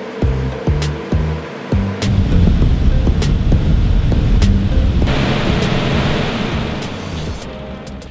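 Background music with a steady beat; about two seconds in, a loud rush of air from a large ducted fan spinning on a half-horsepower grinder motor comes up over it, grows brighter midway, and eases off near the end.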